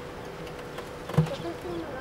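A faint steady hum on one pitch runs through, with a single sharp thump just over a second in.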